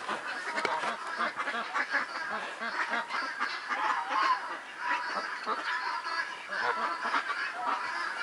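Many birds calling at once, a dense continuous chatter of overlapping calls, like a flock of waterfowl.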